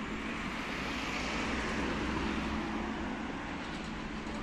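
A car driving past on a paved street, its tyre and engine noise swelling about a second in and easing off near the end, over a steady low hum of street traffic.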